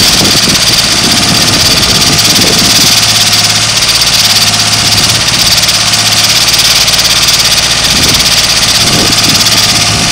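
Ditch Witch RT40 ride-on trencher's engine running steadily at an even speed, with a constant low hum.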